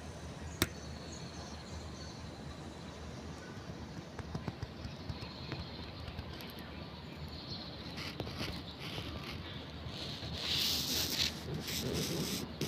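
Outdoor ambience: a steady low rumble with a single sharp click about half a second in, and a louder burst of hissing rustle near the end.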